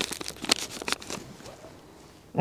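Crinkly handling noise: quick crackles and clicks as gloved hands handle small plastic items, dying away after about a second.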